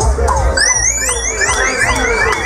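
Dub reggae on a sound system with a deep, pulsing bass line and a dub siren effect. Repeated quick falling zaps give way about half a second in to a rapid run of rising wails.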